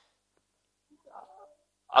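A pause in a man's speech: near silence, with a faint brief whine about a second in, then the voice resumes right at the end.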